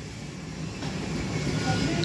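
Vehicle noise growing steadily louder.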